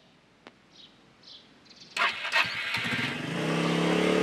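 Motor scooter engine starting about two seconds in, then running steadily as the scooter pulls away.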